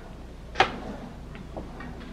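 A single sharp click about half a second in, followed by a few faint ticks, over a low steady hum.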